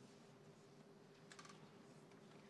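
Near silence in a large church: faint room tone with a steady low hum, and a brief patch of soft small clicks about halfway through.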